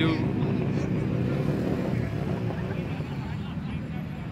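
Low steady rumble of idling motorcycle engines, slowly fading, under the indistinct chatter of a crowd.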